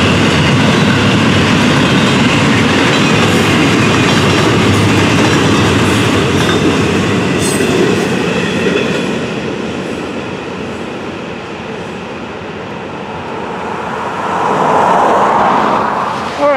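Double-stack intermodal freight train's well cars rolling past on the Florida East Coast main line: a steady rumble of wheels on rail with a few sharp clanks. The sound eases off midway and swells again near the end.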